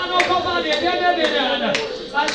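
Hand clapping in steady time, about two claps a second, under a woman singing into a microphone with long held notes.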